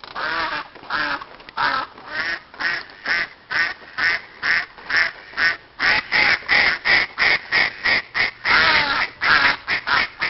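Ducks quacking on the lake in a steady run of short calls, about three a second.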